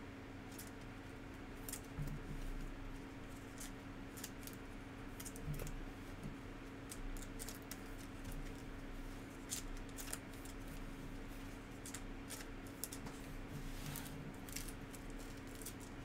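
Trading-card packs being handled: the foil wrapper crinkling and cards sliding and tapping against each other, heard as scattered short crisp crackles and clicks over a steady low hum.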